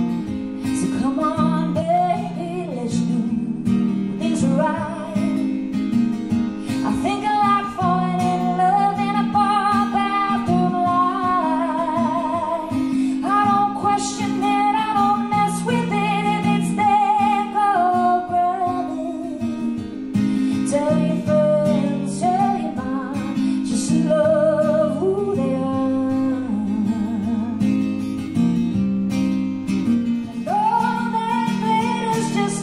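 A woman singing live to her own strummed acoustic guitar, her held notes wavering with vibrato over steady chords.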